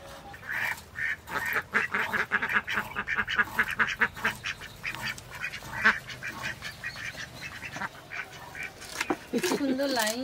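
A flock of domestic ducks quacking in a rapid, dense run of repeated calls that thins out after about six seconds. Near the end a person's voice with a wavering pitch comes in.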